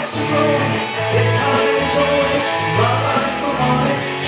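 Rock band playing an instrumental passage: electric guitar over a steady bass line that changes note every half second or so, with a bright shimmer recurring about once a second.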